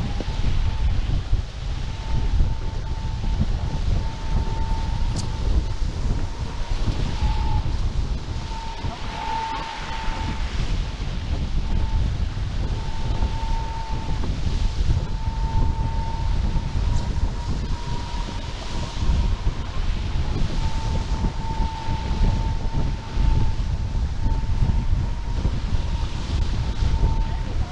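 Wind buffeting the microphone of a camera mounted on an F18 catamaran sailing fast under spinnaker. A thin, steady high whistling tone comes and goes throughout.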